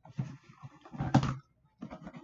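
A cardboard box being handled and opened by hand: rustling and scraping of the cardboard flaps, with a louder scrape about a second in.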